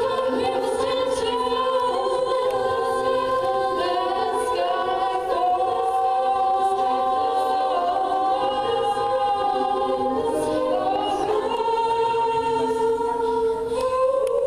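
Treble a cappella choir of female voices singing through microphones and a PA: several parts hold sustained chords under a lead line, with long held notes.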